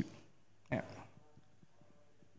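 A quiet pause in a room with one brief voice-like sound, such as a short murmur or laugh from a person, just under a second in.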